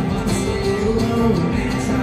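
A live acoustic string band playing steadily, with plucked guitar prominent.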